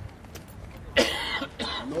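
A person coughing: a sudden, loud, harsh cough about halfway through, followed by a shorter second one.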